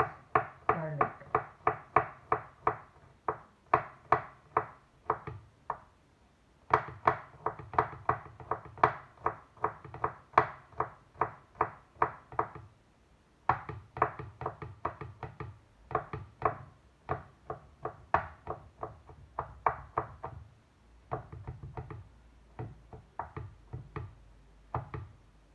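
Kitchen knife chopping garlic cloves on a wooden cutting board: quick, even knocks of the blade on the board, about three or four a second, in runs of several seconds with brief pauses between them.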